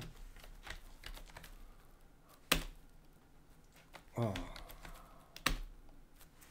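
Computer keyboard keys clicking sparsely, with two sharp, louder key strikes about three seconds apart.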